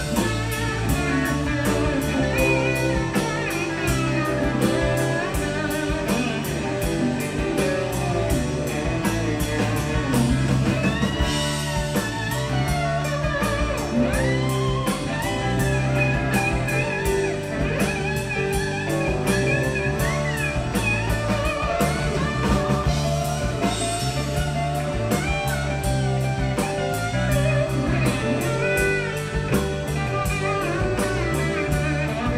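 A live rock band plays an instrumental stretch with no singing: electric guitars, bass guitar and drum kit, with a lead guitar line of bending notes on top.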